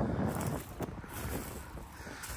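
Wind on the microphone: a steady noise with a faint click a little under a second in.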